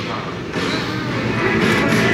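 Busy indoor ambience: background music mixed with the voices of people nearby.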